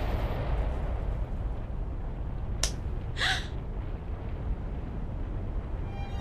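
Low, steady rumble of an animated explosion sound effect lingering in the smoke. A sharp click comes about two and a half seconds in, followed at once by a short breathy sound.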